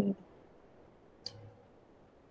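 A single sharp computer mouse click about a second and a quarter in, over quiet room tone.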